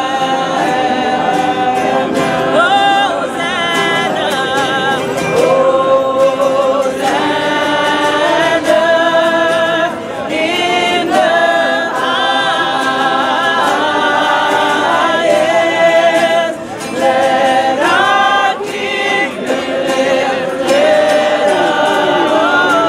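A small gospel choir singing a Christmas carol, several voices together in harmony, with wavering held notes.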